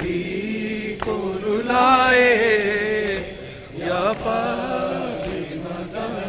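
A young male reciter chanting a noha, an Urdu lament, into a microphone, his voice carried over a PA. He sings long held notes that waver and bend, loudest about two to three seconds in, with a short breath-dip near four seconds. There is one sharp knock about a second in.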